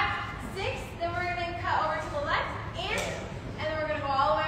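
Speech: a person's voice talking, its words not made out.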